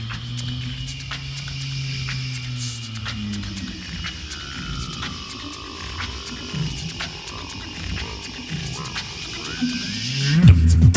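Quiet a cappella vocal intro: a bass voice holds a low note while a higher voice slides up and down, over scattered light mouth-percussion clicks. The full vocal group comes in loudly right at the end.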